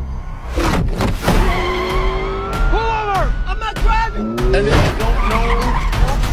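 A car engine revving and tyres squealing in a slide, their pitch rising and falling repeatedly, mixed with movie-trailer music.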